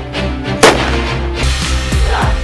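A single loud gunshot from a belt-fed machine gun about a third of the way in, over background music.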